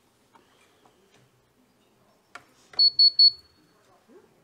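Two sharp clicks, then an electronic device beeps three times in quick succession, each beep short and high-pitched, with faint clicking and handling noise before.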